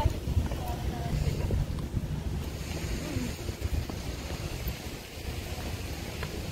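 Wind buffeting the phone's microphone: an uneven low rumble, with faint voices in the background.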